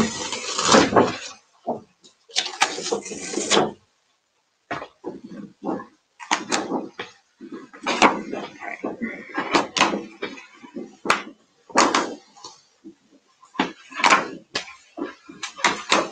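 Plastic stamp sheet being handled as decor stamps are peeled off their backing one at a time: a rustle in the first second and another around two to three seconds in, then a run of short irregular crackles and clicks.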